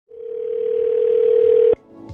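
A steady telephone line tone with line hiss, heard through a phone line; it swells in and cuts off suddenly just before the end.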